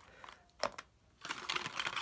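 Light clicks and taps of a cardboard box and small plastic e-cigarette parts being handled on a table: a single click about half a second in, then a quick run of taps in the last second.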